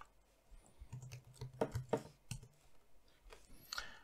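Computer keyboard keys being typed, a handful of separate faint clicks spread over a few seconds, with a faint low hum under them in the middle.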